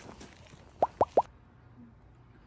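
Three quick plops in a row, each a short upward-sweeping pop, about a sixth of a second apart.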